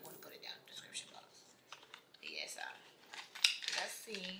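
Handling of a sunglasses box and its plastic wrapping: a scattered run of light clicks and crinkles, the sharpest about three and a half seconds in.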